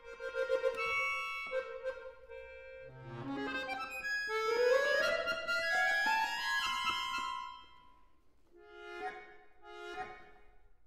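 Solo concert accordion playing contemporary classical music. It opens with a rapidly repeated note, then climbs in a rising run of notes for about three seconds to a held high note that fades away, with a quiet chord near the end.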